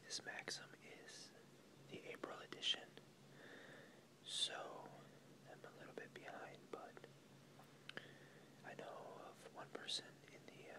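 A person whispering softly, in short phrases with crisp hissing 's' sounds, over a faint steady low hum.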